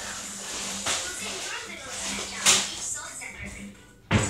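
Indistinct voices talking in a small room, with a sharp smack about two and a half seconds in and a softer one about a second in.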